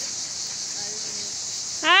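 A herd of goats on the move: one faint short bleat about a second in, over a steady high hiss. A man's driving call "Allez" comes in near the end.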